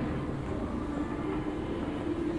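Field recording of an underground métro platform: a steady low rumble of a train with a faint held hum.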